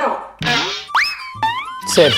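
Cartoon-style comic sound effects over music: a quick sharp upward slide in pitch about a second in, then another rising glide shortly after.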